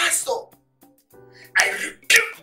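A man's anguished, breathy cries, two outbursts about a second and a half apart, over soft background music with held chords.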